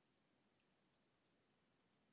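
Near silence: room tone with a few faint, short clicks scattered through it.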